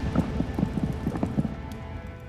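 Horse hooves clopping, several irregular beats a second, over background music that fades away.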